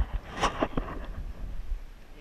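Wind buffeting the camera's microphone as a low rumble, with a sharp knock at the start and a short clatter of knocks and rustling about half a second in.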